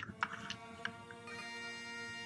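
Soft background music, with a few light clicks as plastic toy engines are handled.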